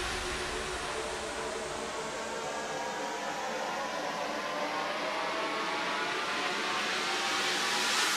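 Breakdown in a drum and bass track: a wash of white noise over faint sustained pad tones, with no drums or bass, dipping and then swelling again toward the end as a build-up.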